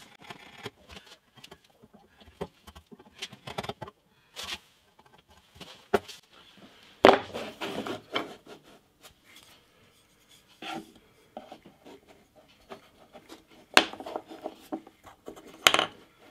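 Small wooden guitar-body blocks being handled and set down on a wooden workboard: scattered light knocks and rubs with quiet gaps between, the firmest knocks about seven seconds in and near the end.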